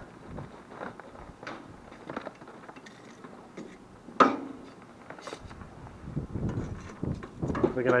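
Metal tongs clinking and scraping in an offset smoker's steel firebox as charcoal is put on the fire, with scattered small clicks and rustles and one sharp clank about four seconds in.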